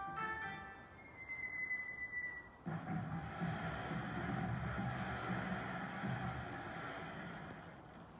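Show soundtrack over outdoor loudspeakers: a few plucked musical notes, then a thin whistling tone from about a second in. Near the three-second mark it gives way to a sudden burst of dense crackling noise that carries on for several seconds, firework sound effects for the projected fireworks.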